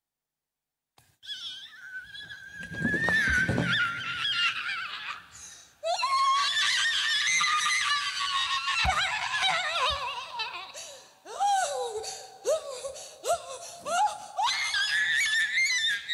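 A woman screaming into a handheld microphone: loud, high cries that slide up and down in pitch. They begin after about a second of dead silence and break into shorter rising shrieks near the end.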